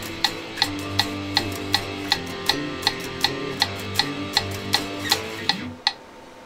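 Electric guitar playing a power-chord exercise (A5, G5, F5, G5) in time with a metronome clicking at 160 beats per minute. The chords change about once a second, and the playing and clicking stop just before the end.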